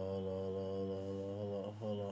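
A man's voice holding one long, steady low note, a drawn-out sung "hold up", then a short syllable near the end.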